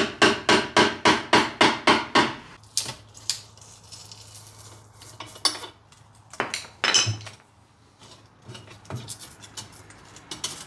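Metal clinking and tapping of three-piece wheel parts and tools on a tire machine. It opens with a quick run of sharp metallic taps, about four a second, for a couple of seconds. Scattered clinks follow as the polished lip is fitted over the wheel barrel, with a low hum for a few seconds in the middle.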